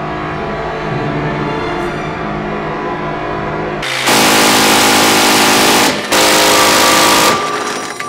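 M134D minigun, a six-barrel electrically driven Gatling gun firing 7.62×51 mm NATO, firing two long bursts: one of about two seconds starting about four seconds in, then after a brief break a shorter one of just over a second. Each burst is one continuous sound, the rounds coming too fast to hear apart. Before the first burst a quieter steady sound with held tones is heard.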